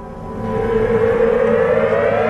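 Programme theme music opening with a siren-like synth riser: one pitched tone that swells louder and climbs steadily in pitch.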